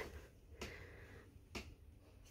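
Near silence with two faint light clicks about a second apart, from the wooden jar cabinet's door being handled and swung open.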